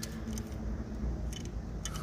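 Small die-cast and plastic toy cars clicking and clinking against each other as they are handled and picked out of a pile, with a few light clicks in the second half.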